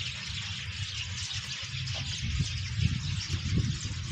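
Steady outdoor background noise with an even hiss and irregular low rumbles.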